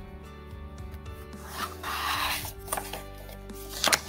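Paper page of a hardcover picture book being turned: a rustle of the page sliding about halfway through, then a sharp flick and snap of the page near the end.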